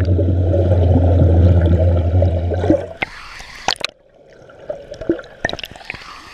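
Pool water heard through an action camera held underwater: a loud steady low hum with bubbling, which cuts off abruptly about three seconds in as the camera comes up out of the water. After that, quieter small splashes and sharp drips of water.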